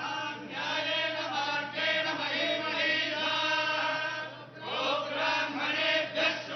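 A group of Hindu priests chanting mantras together, several male voices in unison, with a brief pause for breath about four and a half seconds in.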